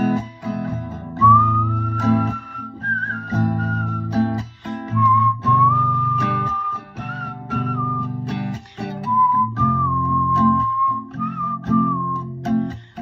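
A person whistling a melody over their own acoustic guitar accompaniment. The whistle is one clear note line that starts about a second in and moves between a few held pitches, over repeated strummed chords.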